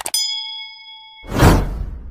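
Subscribe-button animation sound effects: a sharp click, then a bright bell-like ding that rings for about a second, then a whoosh, the loudest part, about a second and a half in.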